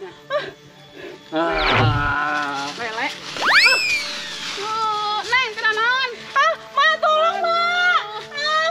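Comic sound effects over background music: a wobbling tone with a low thud about one and a half seconds in, a fast rising-then-falling whistle about three and a half seconds in, then a run of short warbling tones.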